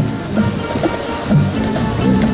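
Marching band playing its field show, brass chords and percussion, with a steady hiss of noise over the music. The band's low notes drop away early on and come back strongly about a second and a half in.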